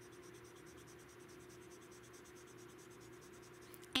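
Nib of a Copic Colorless Blender marker rubbing back and forth over marker ink on plain cardstock: a faint, steady scratching of quick strokes over a low steady hum.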